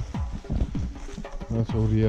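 Background music with a steady beat of deep bass drum hits and held low notes.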